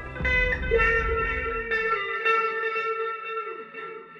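Electric guitar played through an amp, holding long ringing notes in an instrumental passage. Under it, a low rumble slides down in pitch and dies away about halfway through.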